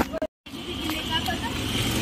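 Street traffic: a motor vehicle's engine running, with people's voices in the background. The sound drops out completely for a moment near the start.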